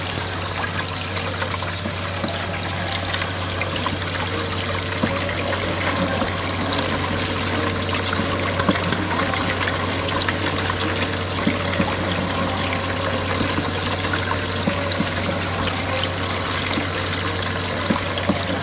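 Desert Fox spiral gold-panning wheel running: water from its spray bar splashes over the turning spiral and pours off its edge into the tub below, with a steady low hum underneath.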